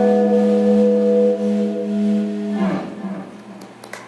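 Final sustained note of a song on a Les Paul electric guitar through its amp, ringing steadily, then cut off about two and a half seconds in with a short noisy scrape and a fading low rumble.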